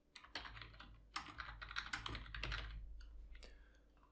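Typing on a computer keyboard: a quick run of key presses lasting about three seconds, then stopping.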